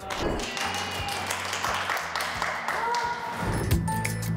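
Hand claps and taps over a rough background of room noise, then, about three and a half seconds in, music with a heavy bass beat starts.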